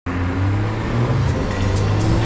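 Car driving along a road: steady engine and road noise with a low hum.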